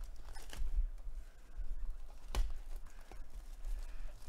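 Soft rustling of the plastic shrink wrap on a cardboard trading-card hobby box as it is handled and the wrap is opened, with a couple of sharp clicks, the clearest a little past the middle.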